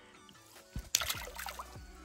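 A small splash about a second in as the bluegill is let go back into the lake, over faint background music.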